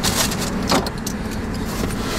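Steady low rumble inside a car cabin, like an idling engine, with a few short clicks and rustles in the first second as people move about and handle things close to the microphone.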